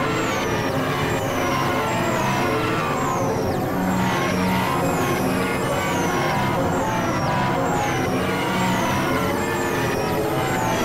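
Experimental electronic synthesizer music: a dense, steady mass of layered drone tones with a short, falling, high-pitched sweep repeating about once a second.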